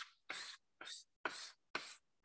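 Chalk drawing quick lines on a chalkboard: about five short scratchy strokes with brief gaps between them, as a grid is ruled.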